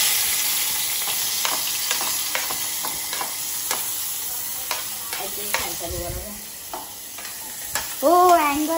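Chopped vegetables tipped into hot oil in a steel pot, sizzling loudly at once and slowly dying down. A steel spoon clicks and scrapes against the plate and the pot.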